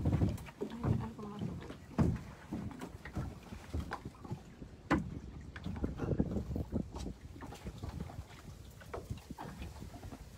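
Irregular knocks and thumps aboard a small riverboat, with a few louder bumps in the first seconds and again around the middle, over a low rumble.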